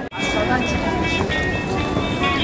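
Busy street sound: crowd chatter mixed with music and a steady low rumble, after a brief gap at the cut just after the start.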